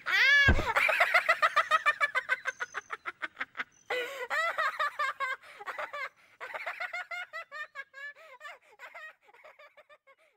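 A cartoon character's high-pitched, rapid laughter, a long run of quick cackles that gradually fades away toward the end. A short falling swoop sounds about half a second in.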